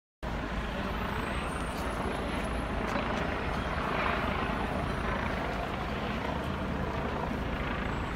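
Helicopter circling overhead, its rotor drone heard as a steady rumble that doesn't let up, mixed with the wash of a city street.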